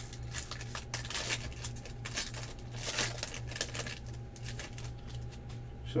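A Bowman Draft jumbo trading-card pack wrapper being torn open and crinkled by hand: a run of irregular crackles and rustles, with the cards handled as they come out. A steady low hum runs underneath.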